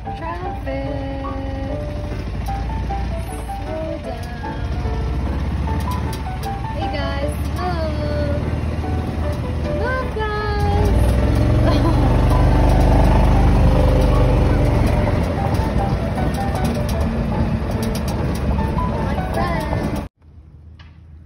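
Background music with Canada geese honking over it, the honks loudest in the middle. A low rumble swells and then fades about halfway through.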